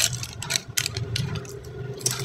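A foil-lined seasoning sachet being cut with scissors and handled: a string of light, irregular clicks and crinkles, the loudest right at the start.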